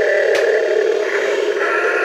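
Battery-operated Mighty Megasaur Dragon toy playing its electronic roar through its small speaker: one long, steady, rasping roar, with a click about a third of a second in.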